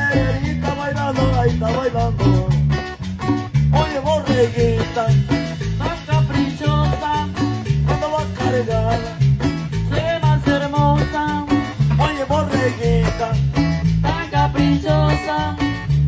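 Chanchona band playing tropical dance music: violins carry a wavering melody over a steady, pulsing bass beat, without a break.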